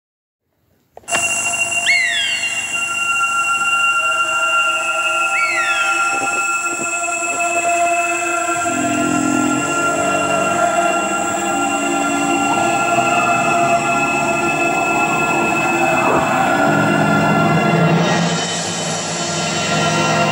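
Film score: a sustained drone of held notes that starts about a second in, with two short, high, falling cries about two and five seconds in, and deeper held notes joining about halfway through.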